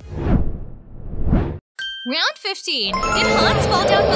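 Quiz-transition sound effects: a falling whoosh and then a rising one, a brief gap, then a ding-like chime run with sliding tones, and music starting about three seconds in.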